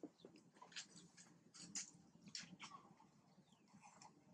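Near silence with faint, scattered short clicks and rustles.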